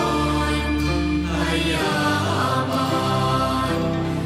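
A group of voices chanting a Thai Buddhist homage in unison to the sarabhanya (สรภัญญะ) melody, with steady low held tones beneath the singing.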